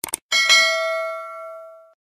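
Subscribe-button animation sound effect: two quick mouse clicks, then a bright notification-bell ding that rings for about a second and a half before cutting off suddenly.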